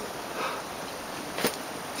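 Steady outdoor background hiss with a soft breath about half a second in and a single sharp click about a second and a half in.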